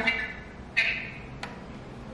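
A short high squeak and then a single sharp click as a cable plug is pushed into a port on the back of a plastic Rain 5G Wi-Fi router.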